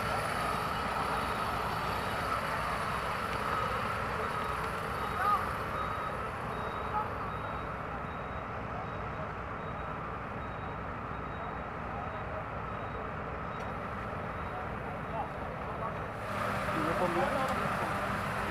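Steady drone of idling emergency vehicles, with faint voices in the background. A deeper engine hum comes in near the end.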